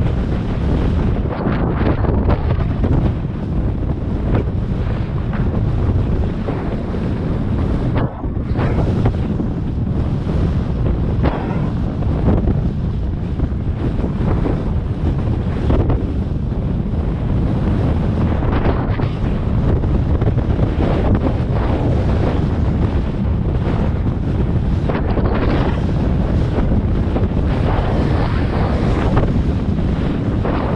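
Heavy wind rushing over the microphone of a helmet camera on a horse being ridden at speed across open ground. The noise is loud and continuous.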